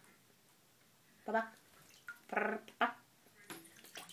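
Three short voiced sounds, then water splashing in a bathtub near the end as a Cayuga duck moves about in the bathwater.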